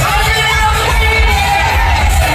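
Live pop-rock band playing loud through a stadium sound system, with heavy drums and bass under a male lead vocal.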